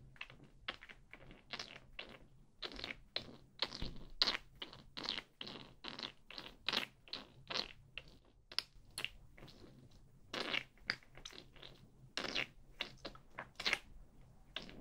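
Irregular close-up taps and scratches, some in quick clusters, of fingers handling and tapping a bottle of tinted serum foundation near the microphone.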